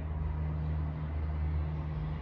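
A steady low hum with a faint rumble beneath it.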